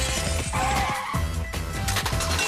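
Cartoon background music with a beat, and a skidding screech sound effect about half a second in.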